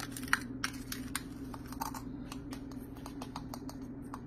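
White plastic measuring scoop clicking and scraping against a plastic tub as it digs out finely ground hard-candy powder: a run of light, irregular clicks.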